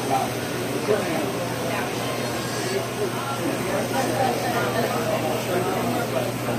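Indistinct voices of several people talking at once, over a steady low hum.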